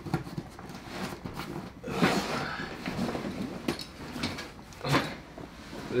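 Handling noise from a padded fabric Ready Rig bag being fetched and carried: rustling cloth with scattered knocks and bumps. There is a sudden knock right at the start, a burst of rustling about two seconds in, and sharper knocks around four and five seconds in.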